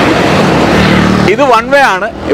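A motor scooter passes close by, its engine and tyre noise loudest about a second in, then fading as a man starts talking.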